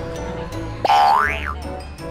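A comical cartoon-style sound effect over light background music: about a second in, a sudden whistle-like 'boing' glides up in pitch for about half a second and then dips, louder than the music.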